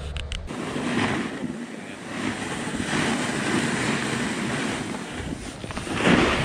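Wind rushing over the camera's microphone together with the hiss of skis or a board sliding on groomed snow during a descent, the noise swelling and easing.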